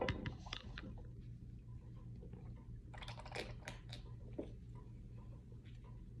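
A sip from an aluminium drink can, with the loudest clicks right at the start, then soft mouth clicks and smacks while tasting. A denser run of small clicks comes about three to four seconds in, over a steady low hum.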